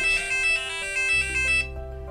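EDU:BIT board's buzzer playing a quick electronic melody of stepped beeping notes, the pedestrian-crossing signal that tells people they may go while the light is red. It stops near the end.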